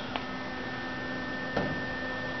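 Steady background hum of room tone with thin constant tones, broken by a faint click just after the start and another about a second and a half in.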